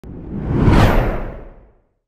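Whoosh sound effect for a TV news channel's logo animation. It is a single swelling rush with a deep rumble under it, rising to a peak just under a second in, then falling away and fading out.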